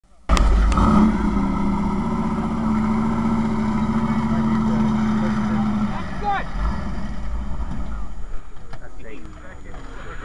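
A car engine running steadily at a constant pitch, which drops away about six seconds in. Brief voices follow.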